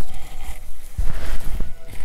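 Handling noise from a synthetic wig being turned over in the hands: a low rumble with a few soft knocks near the middle and a faint rustle.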